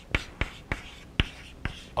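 Chalk writing on a blackboard: a quick, uneven series of short sharp taps and clicks, about four a second, as letters are chalked onto the board.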